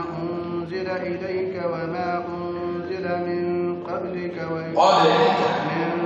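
Men's voices chanting Quran recitation together in slow, drawn-out unison, with a steady held note underneath. The voices grow louder about five seconds in.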